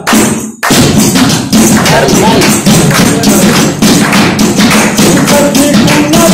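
Saraiki folk music accompaniment: a fast, steady run of percussion taps and thumps, about four strokes a second, between sung lines of the song.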